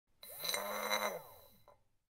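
A short electronic intro sound effect: it starts suddenly, with steady tones and pitches gliding up and down, then fades out within about a second and a half.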